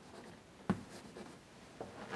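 Chalk writing on a blackboard: faint scratching with one sharp tap a little under a second in.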